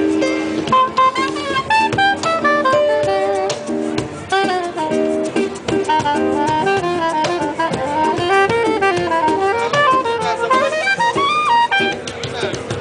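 Live acoustic jazz-style trio: a straight soprano woodwind plays a fast, winding melody over rhythmic acoustic guitar chords and cajón hand percussion. About halfway through the guitar's repeated chords give way and the melody dips into a lower register before climbing again.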